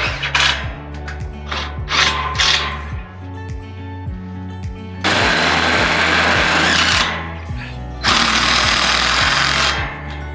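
A power driver running screws into galvanized steel carport tubing, in two loud bursts of about two seconds each, about five and eight seconds in, over background music with a steady beat.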